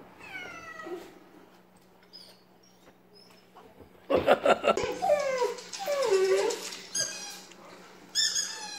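A dog whining: one faint falling cry near the start, then from about halfway a run of loud, wavering, drawn-out cries that rise and fall in pitch.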